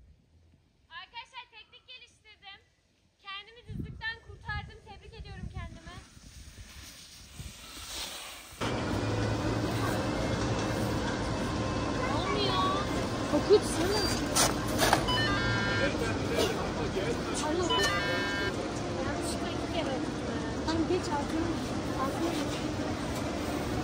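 A few seconds of music, then about eight and a half seconds in it gives way abruptly to the steady din of a crowded chairlift gate: people chattering around, with two short runs of electronic beeps.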